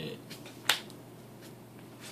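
A single sharp click about two-thirds of a second in, from trading cards handled on the table, over quiet room tone.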